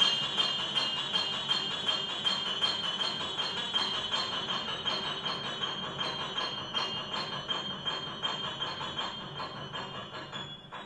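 Grand piano played in a fast, evenly repeated figure, a dense machine-like pulse of struck chords that gradually gets quieter.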